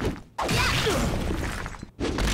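Animated fight sound effects: a sudden crash and rush of rock and sand starts about a third of a second in and runs on, fading near the end.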